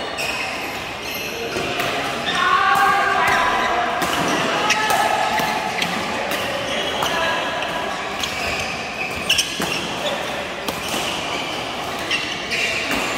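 Badminton rallies in a large hall: sharp cracks of rackets hitting shuttlecocks again and again, with shoes squeaking and scuffing on the court floor and players' voices, all echoing in the hall.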